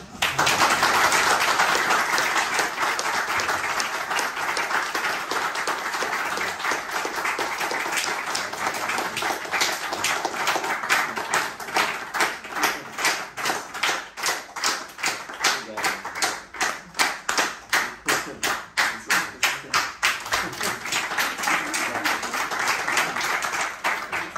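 Audience applauding. About ten seconds in, the applause turns into steady rhythmic clapping in unison, about three claps a second.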